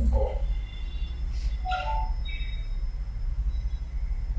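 Steady low hum of room noise, with two brief, faint voice fragments: one right at the start and one about two seconds in.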